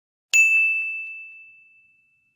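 A single bright ding, like a bell-chime sound effect, strikes about a third of a second in and rings out on one clear tone, fading over about a second and a half.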